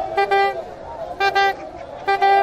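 A horn tooting in short blasts at one steady pitch, in a rhythmic pattern: two quick toots at the start and another about a second later. Crowd voices sound underneath.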